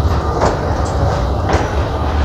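Steady low rumble in an aircraft boarding bridge, with a couple of sharp knocks from footsteps or a bag, about half a second and a second and a half in.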